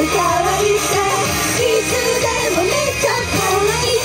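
Female idol group singing live into handheld microphones over a loud pop backing track, the sung melody gliding up and down without a break.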